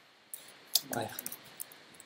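A few sharp clicks of computer keys, the loudest about three quarters of a second in, with a short exclaimed 'aiya' just after.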